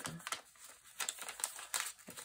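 A folded lined-paper booklet rustling and crinkling as hands open and handle its pages: a run of irregular, short papery crackles.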